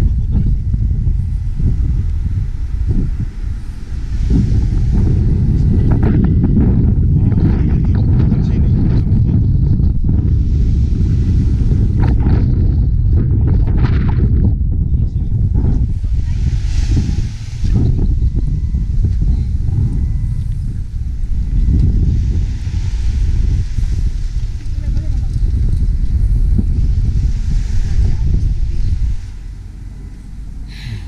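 Wind buffeting the microphone: a loud, gusty low rumble throughout, with faint voices in the background.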